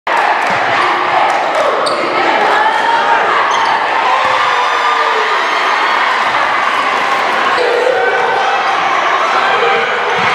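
Basketball game sound in a gym hall: a ball bouncing on the court, with a steady din of crowd voices and shouts from the stands.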